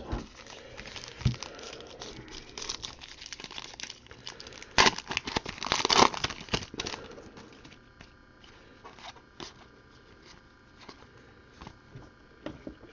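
A trading-card pack wrapper crinkling and tearing as it is ripped open by hand. The crackling is loudest from about five to six and a half seconds in, then drops to quieter rustling.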